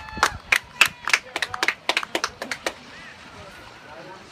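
Hand clapping from sideline spectators, roughly four claps a second with shouts mixed in, cheering a goal; it stops a little under three seconds in.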